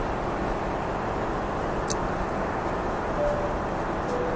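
Steady cabin noise of a Boeing 777-300ER in flight: an even, low rush of engine and airflow noise, with a faint click about two seconds in.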